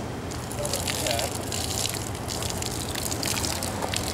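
Water poured from a small plastic tub over a rubber-banded tie-dye shirt bundle, rinsing out the loose dye and splashing onto the gravel below; the rushing, splashing sound starts just after the beginning and keeps going.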